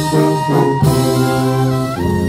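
Brass band playing in full: trumpets and trombones on held melody notes over a sousaphone bass line that changes note about once a second.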